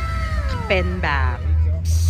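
A woman talking in Thai over background music, with a steady low hum underneath.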